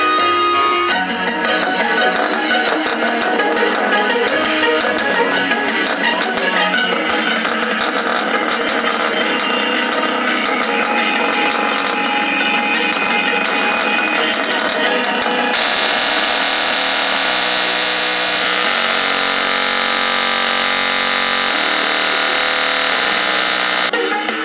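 Music played loud through a small Technics bookshelf speaker's single full-range driver, which has no tweeter. The sound is thin, with no bass, and about fifteen seconds in it turns suddenly brighter; the speaker keeps playing.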